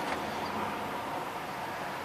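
Steady background hiss of room noise, with a faint low hum.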